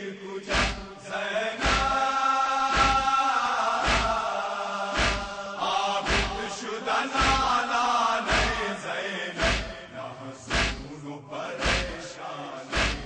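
Group of men chanting an Urdu noha in unison, with rhythmic chest-beating (matam) thumps about once a second. The sung phrases swell twice, in the first and middle parts, while the beats run steadily underneath.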